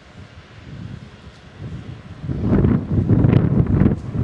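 Wind buffeting the camera microphone as an irregular low rumble. It is faint at first, then grows loud and gusty a little after two seconds in.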